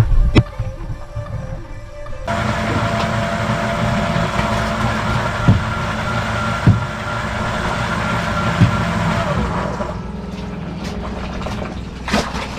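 Fishing boat's engine running steadily, with a few short knocks on deck, under background music.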